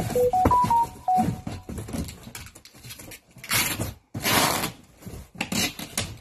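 Cardboard boxes being handled and packed, with knocks and two loud scraping, rustling bursts in the middle. Near the start comes a quick series of five short electronic beeps at stepping pitches.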